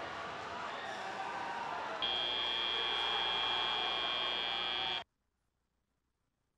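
FRC field's end-of-match buzzer: one steady electronic tone held for about three seconds, starting about two seconds in over background arena noise, then cutting off suddenly.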